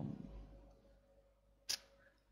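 A single short, sharp click near the end of an otherwise quiet pause.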